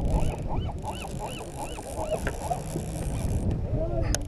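Birds calling over and over in short notes that rise and fall, several voices overlapping, over a low steady rumble.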